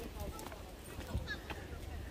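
Footsteps on a hard path, a knock every half second or so, with faint voices of people in the background.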